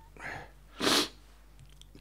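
A man's breath: a soft breath just after the start, then a sharper, louder breath about a second in.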